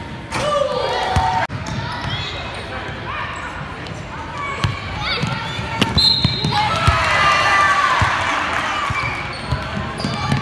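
Basketball game in a gym: sneakers squeaking on the hardwood court, the ball bouncing, and spectators shouting, with the crowd noise swelling in the second half.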